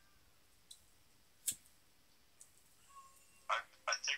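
A quiet room with one sharp click about a second and a half in and a couple of fainter ticks; a voice starts near the end.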